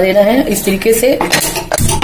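A woman speaking, then a few short knocks of an aluminium saucepan against the gas stove's pan support in the second half.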